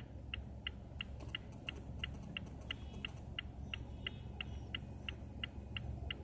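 A Mazda's turn-signal indicator ticking evenly, about three ticks a second, over a low engine and cabin hum.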